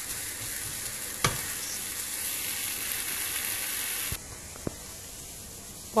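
Bacon and chopped onion sizzling in a frying pan, with one sharp knock about a second in. The steady sizzle cuts off suddenly about four seconds in, leaving a fainter hiss.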